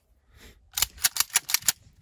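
CZ 75B 9mm pistol's steel slide being worked by hand to clear and check the chamber after the magazine is removed: a quick run of about seven sharp metallic clicks starting about a second in.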